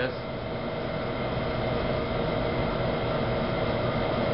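Steady machine hum from kitchen equipment: an even rush of air with several held tones, unchanging throughout.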